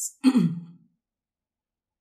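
A woman's voice: a hissed 's' and then a short vocal sound falling in pitch, over within the first second, then silence.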